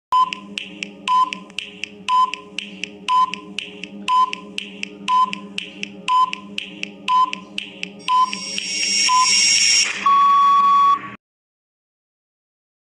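Countdown-timer sound effect: ticking with a short beep once a second over a steady low drone, about ten beeps in all. Near the end a rising whoosh leads into a long final beep of about a second that cuts off suddenly, marking time up.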